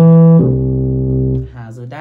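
Yamaha electronic keyboard playing a bass line in its low register: a short low note, then a longer held note that stops about one and a half seconds in.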